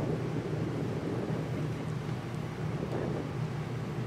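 Wind buffeting a phone's microphone outdoors: a steady rushing noise with a constant low hum underneath.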